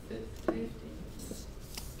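A faint, distant voice answering a question from across a room, with a light click about half a second in.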